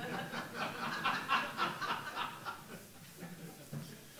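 Audience laughter: many people chuckling at once at a joke, dying away after about two and a half seconds.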